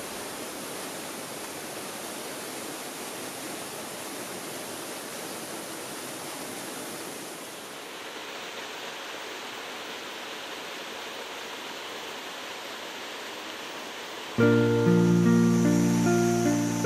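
Steady rush of flowing water in a mountain stream. About a second and a half before the end, acoustic guitar music comes in suddenly and much louder.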